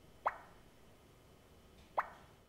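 Two short plop sound effects from an iPad puzzle game, about a second and a half apart, each a quick upward blip as a piece is placed.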